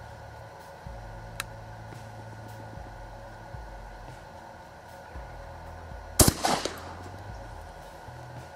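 A single shot from a Benelli Nova 12-gauge pump shotgun firing a solid brass slug, about six seconds in, with a short echo trailing after it.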